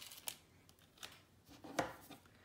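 Faint rustling of a paper sticker-label sheet being handled, with small ticks and one sharper click near the end as the plastic ink pad case is picked up.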